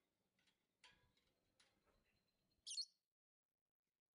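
Lovebird giving one short, high chirp nearly three seconds in, after a few faint ticks.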